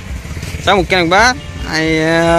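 A motorcycle passing on the road, its engine a low rumble under a person's voice, which ends in a long held note.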